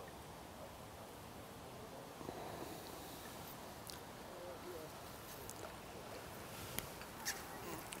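Quiet outdoor background with a few faint, distant wavering calls a couple of seconds in, and a couple of small clicks near the end.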